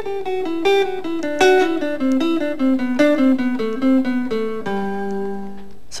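Clean electric guitar (Telecaster-style) playing a brisk run of single picked notes that step downward in a zigzag pattern: a descending scale in thirds. It ends on a low note held for about a second near the end.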